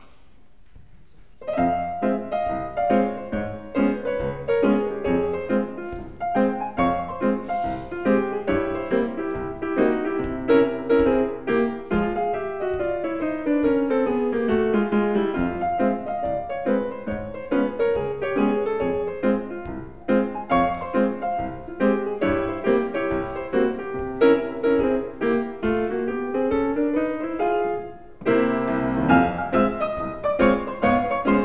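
Steinway grand piano playing a 1915 ragtime-era fox trot, coming in about a second and a half in with busy, bouncing chords. A long descending run falls through the middle, and a rising run near the end is followed by a short break before the tune picks up again.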